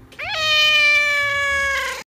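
Tabby cat giving one long meow that rises quickly at the start, then holds and slowly falls in pitch before it cuts off near the end.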